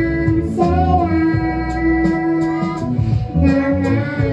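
Female vocalist singing live into a microphone over backing music, holding one long note from about half a second in to nearly three seconds.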